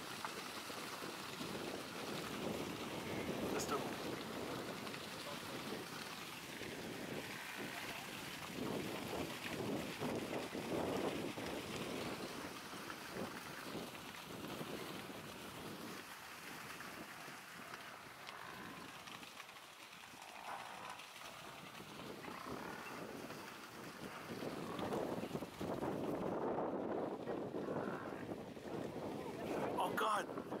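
Stampeding herd of Cape buffalo: a continuous noisy rush of many hooves that swells and fades, with wind on the microphone.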